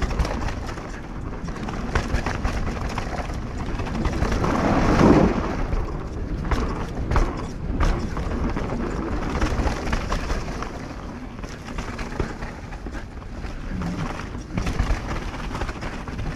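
Mountain bike descending a dirt trail: tyre rumble and wind on the bike-mounted camera's microphone, with frequent rattles and knocks from the bike over roots and bumps. There is a louder rumble about five seconds in as the tyres roll onto a wooden plank bridge.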